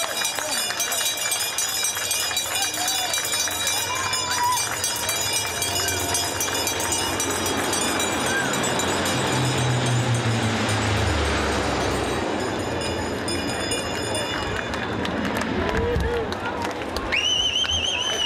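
C-130 Hercules four-engined turboprop flying low overhead: a steady high propeller whine over a deep drone. The pitch drops as it passes over, about ten seconds in. Crowd chatter runs underneath.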